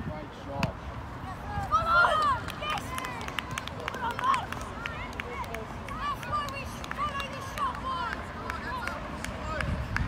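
Short shouts and calls from young players and spectators on a football pitch, many brief overlapping cries around a goal, with wind rumbling on the microphone.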